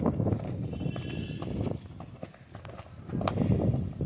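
Two dogs play-fighting and scuffling on concrete, with quick knocks and patter of paws, a short lull just past the middle, then more scuffling near the end.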